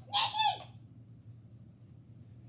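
A child's short, high-pitched vocal sound effect, about half a second long, dropping in pitch at the end, made while playing with sock puppets.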